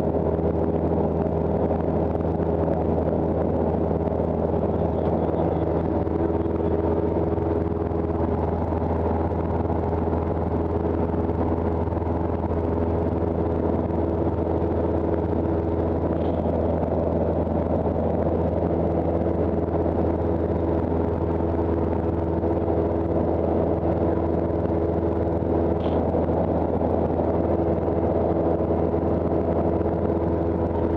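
Cessna 172's piston engine and propeller in steady cruise, heard from inside the cabin as a constant droning hum that holds one pitch throughout.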